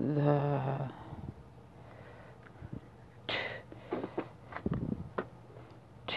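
A brief hummed voice sound at the start, then a breathy rush about three seconds in and a handful of light clicks and taps as a tarot deck is handled, cut and cards pulled apart.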